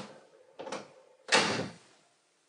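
Three sharp knocks or bangs, the last and loudest about a second and a half in, with a faint steady tone between them.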